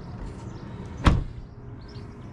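The driver's door of a Range Rover L405 swung shut with one heavy thud about a second in.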